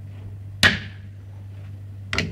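A single sharp knock about half a second in, fading quickly, over a steady low hum.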